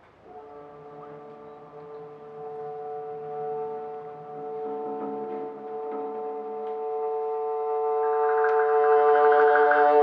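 A small chamber ensemble holds one sustained chord under a conductor's direction, swelling steadily louder. A brighter upper layer joins near the end.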